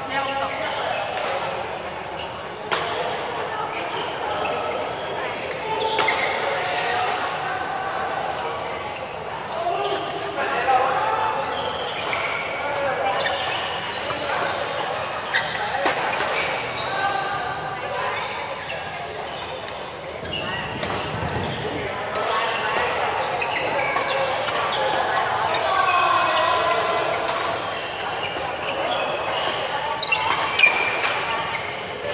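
Badminton play in a large hall: rackets hitting the shuttlecock with sharp, irregular cracks, over the chatter of players' voices.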